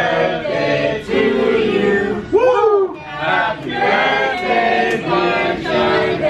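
A group of voices singing a birthday song together in chorus at a restaurant table, with a loud swooping rise-and-fall cry about two and a half seconds in.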